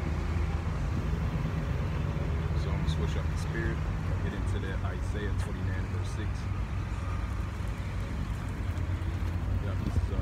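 Street traffic at an intersection: motor vehicles idling and passing, a steady low engine rumble.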